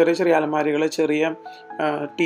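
A voice talking over background music, with a steady chime-like tone in the music.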